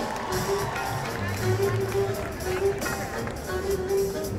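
Live jazz band playing: long held melody notes over a bass line, with voices in the crowd underneath.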